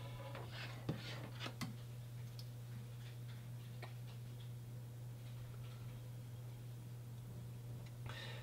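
Faint, quiet combing: a fine-tooth comb worked through pomaded hair to form a side part, with a few soft clicks in the first two seconds over a steady low hum.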